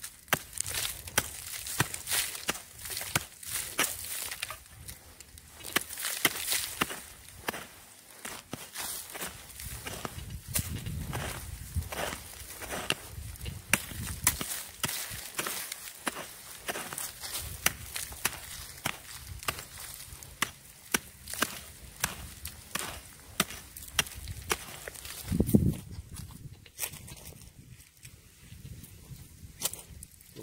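Short-handled hand hoe chopping into dry, hard soil and scraping the loosened dirt aside while digging a hole, in repeated strikes of one or two a second. The strikes stop a few seconds before the end.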